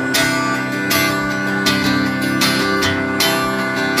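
Live acoustic country band in an instrumental break: acoustic guitar strummed in a steady rhythm, with a fiddle holding long notes over it.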